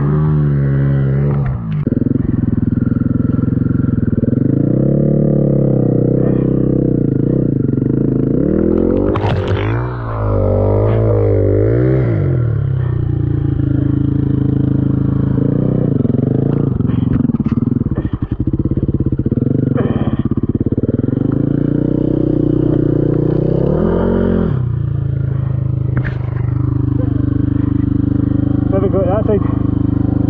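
Single-cylinder dirt bike engine revving up and down again and again as the throttle is opened and eased off, working under load on a steep, rutted hill climb, with a few short knocks from the bike.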